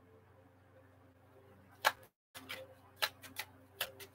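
Tarot cards being handled on a table: a few sharp clicks and taps in the second half, after a stretch of near silence with a faint hum.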